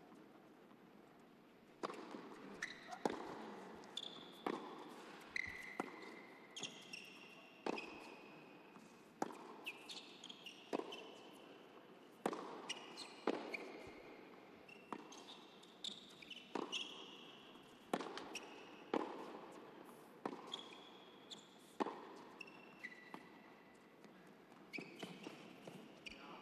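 A tennis rally on an indoor hard court: racket strikes and ball bounces knocking about once every second or so, each with a short echo in the hall, with brief high sneaker squeaks on the court between shots. The first two seconds are nearly quiet before the hitting starts.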